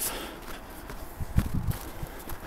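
Footsteps of a person walking on a scraped winter path edged with snow: a few uneven steps, the loudest about a second and a half in.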